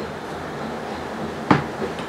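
Brush pen stroking across a notepad's paper over a steady hiss, then a single sharp tap about one and a half seconds in.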